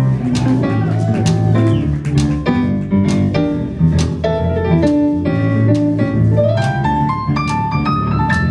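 A live blues band playing, with electric guitar, keyboard, bass and drums. A run of rising notes climbs near the end.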